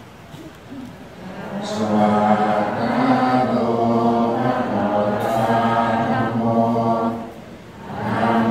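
Many voices chanting a Buddhist chant together in unison on steady held pitches. The chant starts about a second and a half in and pauses briefly near the end.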